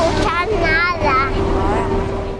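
A young child's voice speaking, over a steady low hum.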